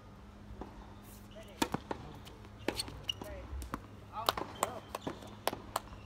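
Tennis balls struck by rackets and bouncing on a hard court: a run of about a dozen sharp pops, irregularly spaced, starting about one and a half seconds in.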